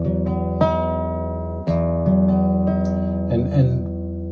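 Classical guitar chords strummed one after another, each left to ring about a second before the change to the next: a slow practice of chord changes.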